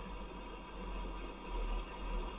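Faint steady low hum with a light hiss inside a vehicle cab.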